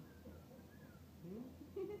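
A baby vocalizing softly, with a short rising coo a little over a second in.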